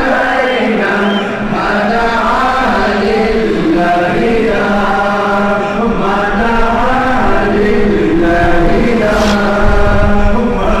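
Voices chanting a devotional Islamic chant in a slow, flowing melody over a steady low drone.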